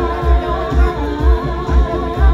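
Female vocal group singing live into microphones over amplified music with a steady bass beat, about two beats a second.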